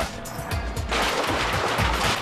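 Background music. About a second in, a loud, steady noise of industrial wood-processing machinery joins it.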